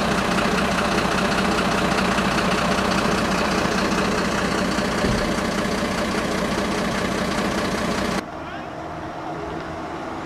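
Diesel engine of an emergency vehicle idling close by, a steady even run. About eight seconds in it drops abruptly to a quieter vehicle rumble.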